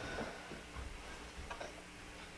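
Faint, irregularly spaced light ticks and soft rustling as a quilted comforter is shaken out and spread over a bed.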